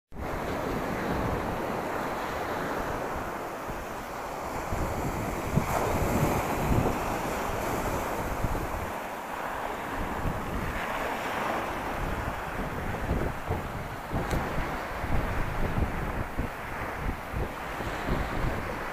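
Small waves washing up onto a pebble beach, with wind buffeting the microphone. The surf swells louder twice, about a third and about two thirds of the way through.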